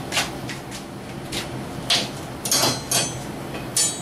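Handling noise: a string of light knocks and clinks as objects are picked up and set down, with a quick cluster of clicks about two and a half seconds in and one more sharp click near the end.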